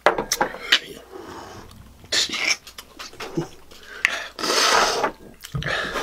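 Two sharp clicks of glass shot glasses set down on a table. Then gasps and long, breathy exhales from drinkers who have just downed a shot of neat scotch, reacting to its burn.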